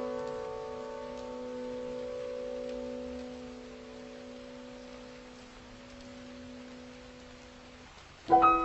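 Soft solo piano music: a single held chord rings on and slowly dies away, nearly faded out near the end.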